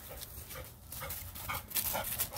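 A hound panting in short breaths as it runs up, the breaths getting louder near the end as it comes close.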